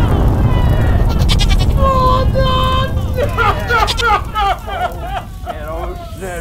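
A fireball effect's low rumble fades over the first three seconds. From about two seconds in, loud bleating, goat-like cries take over: first two held notes, then a run of wavering cries.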